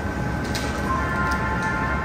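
Bausch + Lomb Stellaris Elite phacoemulsification machine running during cataract surgery: a constant hum, with several steady electronic tones coming in about a second in. The tones signal irrigation fluid flowing into the eye.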